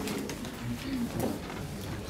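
Meeting-room background noise: a low, indistinct murmur of voices with soft rustling and a few faint clicks as people move about between agenda items.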